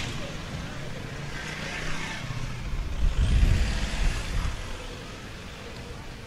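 Cars driving by on a city street, one passing close to the microphone; the engine and tyre noise swells about three to four seconds in, then eases off.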